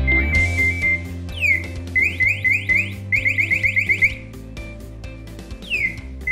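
Draeger Sentinel 1500 PASS device sounding its alarm over background music: a few short high beeps, then a fast run of rising electronic chirps, about four a second, that stops about four seconds in and starts again near the end.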